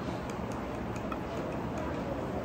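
Steady room noise in a small restaurant, with a few faint, light ticks scattered through it.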